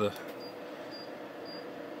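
Room tone: a steady low hiss with three faint, short high pips about half a second apart.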